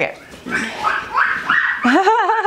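A baby squealing and babbling happily in high-pitched calls that climb in steps to a held squeal.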